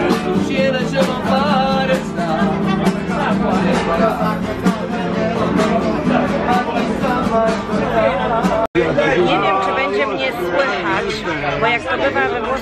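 A man singing to his own strummed acoustic guitar, with the chatter of a crowded restaurant around him. About two-thirds of the way through, the song cuts off abruptly and only crowd chatter is left.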